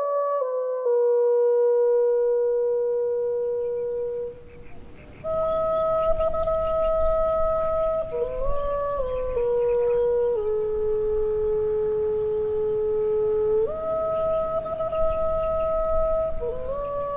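Background music: a slow melody on a woodwind instrument, long held notes joined by short ornamental turns, breaking off briefly about four seconds in. A low rumble runs beneath it.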